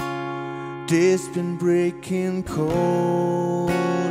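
Acoustic guitar playing ringing chords, a new chord struck every second or so.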